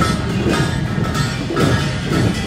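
Korean traditional percussion from a pungmul street troupe: drum strokes about twice a second with ringing metallic clangs, over the noise of a crowd.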